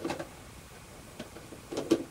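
A few light clicks and taps of small parts being handled on a workbench, the loudest pair near the end.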